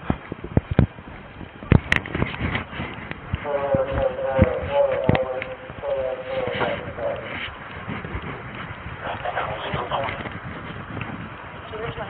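Indistinct, muffled voices, with repeated sharp knocks and rustling from the body camera rubbing and bumping against the wearer's gear as he moves.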